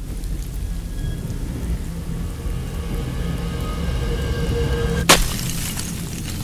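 Orchestral music: a low, dense rumbling roll under a held high note, broken by a single sharp stroke about five seconds in that cuts the held note off.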